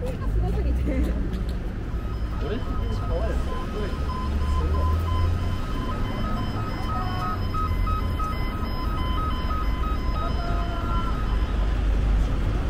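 Busy city street sound: a steady traffic rumble and passers-by talking in the first few seconds. About two seconds in, a repeating electronic beep of two alternating tones starts and keeps on evenly until near the end.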